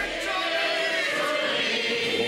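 A large studio audience laughing, many voices together.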